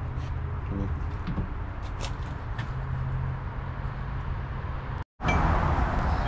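Steady low mechanical hum of a motor running in the background, with a few faint clicks. The sound drops out for a moment about five seconds in.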